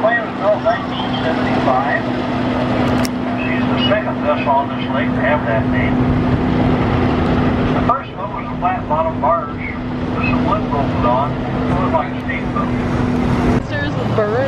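Boat engine running with a steady low hum, with people's voices talking over it. The hum cuts off suddenly just before the end.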